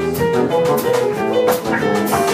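Live jazz band playing: piano, electric bass and drum kit, with cymbal strikes every half second or so.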